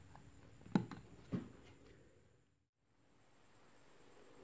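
Two brief, faint handling clicks a little over half a second apart, about a second in, over faint room tone, then dead silence.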